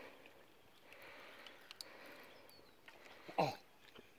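Near quiet: a faint steady hiss with a few faint, short ticks about halfway through, then a man's short "Oh" near the end.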